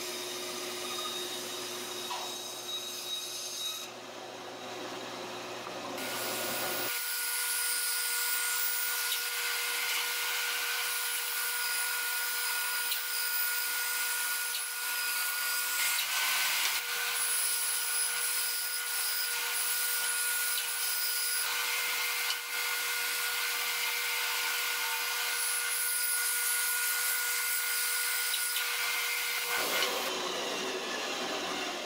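Bandsaw running and cutting through a thick board, with a steady whine over the noise of the cut; the sound changes abruptly about seven seconds in.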